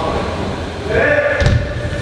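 A person's long drawn-out shout held on one steady note, starting about a second in, over the low rumble of BMX tyres rolling on wooden skatepark ramps.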